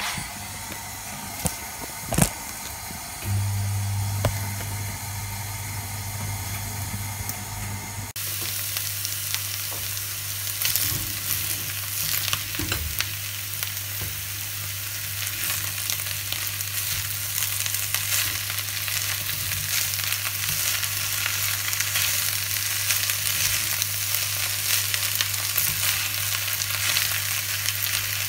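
Broccoli, carrots and minced meat sizzling in a frying pan while being stirred with a plastic spatula, with a steady low hum underneath. The sizzle grows louder about eight seconds in.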